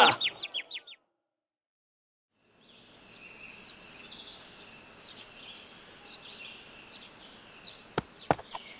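Birds chirping in short, scattered calls over a soft outdoor ambience, coming in about three seconds in after a moment of dead silence.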